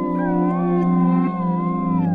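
Greenland sled dog howling in one long wavering call, its pitch drifting slowly up and down, over a steady low chord of background music.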